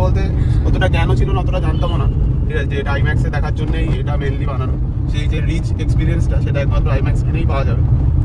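Steady low rumble of road and engine noise inside a moving car's cabin, with a man's voice talking over it.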